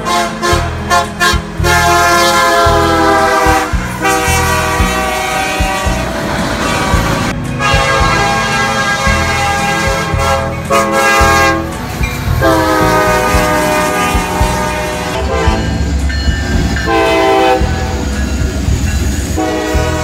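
Diesel freight locomotive air horn sounding a series of long blasts with a few shorter ones between, a chord of several steady tones, over the rumble of the locomotive engines and wheels on the rails.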